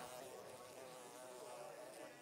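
Faint buzzing of a housefly, its pitch wavering up and down.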